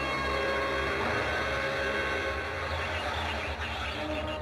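Horror film soundtrack: a loud, sustained drone of several held tones over a steady low rumble.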